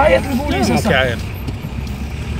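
Steady low rumble of a car idling in stopped traffic, heard from inside the cabin, with a voice over it for about the first second.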